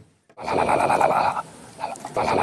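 A loud whinny-like call lasting about a second, starting about half a second in, with a second one beginning near the end.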